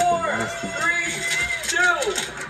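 Several excited voices shouting over one another as a countdown nears its end.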